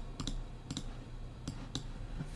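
Faint, sharp computer mouse clicks, about five of them at uneven intervals, as on-screen controls are switched off.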